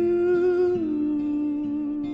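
A singer's voice holding one long note in an acoustic cover song, stepping down to a lower note a little under a second in, over soft accompaniment.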